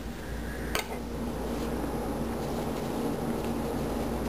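A single short metallic snip about a second in, from scissors cutting through yarn ends, then a steady low background hum.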